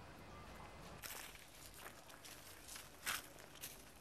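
Footsteps: a run of irregular scuffs and crunches starting about a second in, one louder step about three seconds in.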